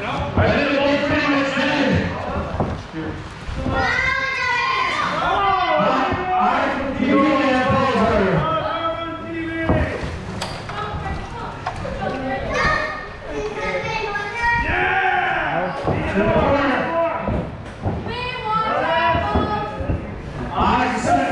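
Young voices shouting and yelling over one another, with occasional thuds and slams of impacts.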